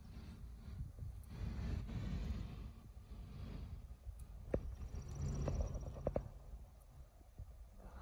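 Uneven low rumble of wind and handling noise on a phone microphone outdoors, with a few soft clicks about halfway through.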